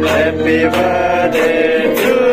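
Voices singing a song together, in a steady unbroken line of melody.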